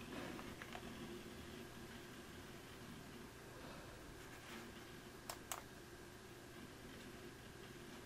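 Two computer mouse clicks about a quarter second apart, some five seconds in, over a faint steady hum.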